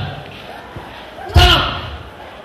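A single loud thud about a second and a half in, from a woman's body striking a hard floor as she thrashes about, with a short vocal cry on it.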